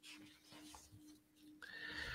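Near silence: faint room tone with a low steady hum. A brief faint sound comes near the end.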